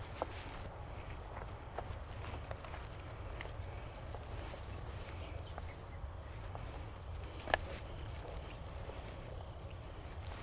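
Footsteps on a rocky path of loose stones through dry brush: irregular small crunches and clicks of stones and stems underfoot, with one louder clack about three-quarters of the way through.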